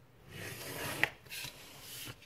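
A scoring stylus dragged along a metal ruler across patterned paper, scoring a fold line, ending in a sharp click about a second in. A shorter rub follows.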